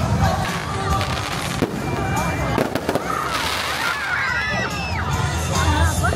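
Fireworks going off in scattered sharp bangs and crackles over a crowd's chatter and excited shouts.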